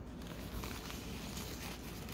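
Quiet room with faint rustling of a paper napkin handled in the fingers while a pipe cleaner is wrapped around it.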